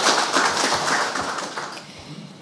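Audience applauding, the clapping dying away toward the end.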